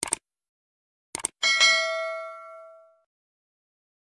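Subscribe-button sound effect: a quick cluster of clicks, another cluster about a second later, then a bright bell ding that rings and fades out over about a second and a half.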